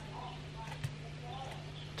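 A steady low hum under faint, indistinct room sounds, with a single sharp click a little under a second in.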